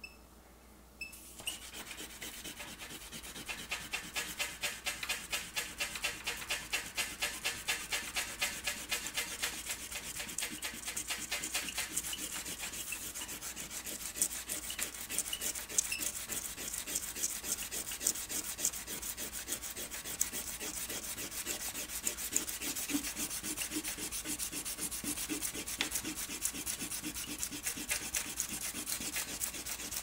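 A hard, abrasive hand eraser rubbed rapidly back and forth on airbrushed paper, scrubbing off overspray paint. The quick, even strokes start about a second and a half in.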